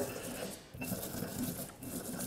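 Pestle grinding and scraping in a stone mortar, mashing coarse salt, toasted arbol chili peppers and garlic into a paste. The strokes are faint and irregular.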